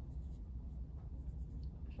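Faint rubbing of hands stroking over the skin of a knee during manual lymph drainage skin stretches, over a steady low hum.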